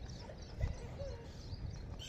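Footsteps on a dirt path during a dog walk, uneven soft thumps with rustling, while birds chirp faintly in the background.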